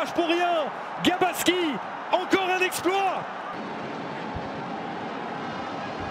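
A man's voice shouting excitedly in long, high-pitched drawn-out cries over steady stadium crowd noise. The shouting stops about three seconds in, leaving only the crowd noise.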